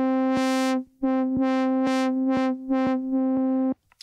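Synthesizer in the Groove Rider 2 app playing the same note again and again, about two a second, while its low-pass filter cutoff is turned up and down so the tone brightens and dulls several times. It breaks off briefly just before one second and stops just before the end.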